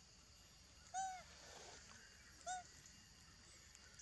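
Macaque giving two short arched calls, rising then falling in pitch, about a second and a half apart.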